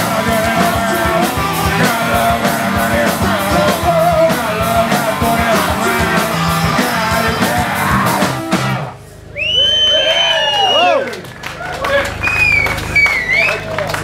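Live garage punk band playing loud: drums, electric guitar and shouted vocals. The song stops abruptly about nine seconds in, followed by whistles and yells from the audience.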